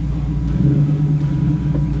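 The 5.0L Coyote V8 of a Factory Five Type 65 Daytona Coupe running as the car is driven, a steady low rumble through its dual exhausts. It is heard inside the stripped cabin, which has no door panels or windows, and swells slightly about half a second in.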